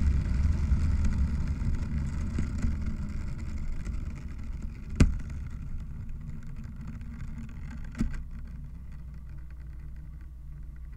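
Improvised experimental sound piece played from a graphic score: a dense, low noise that fades gradually, broken by two sharp clicks about five and eight seconds in.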